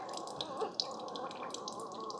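Keurig K-Supreme Plus single-serve coffee maker starting a brew: a steady running and gurgling of water through the machine, with the first coffee beginning to drip into an empty glass mug.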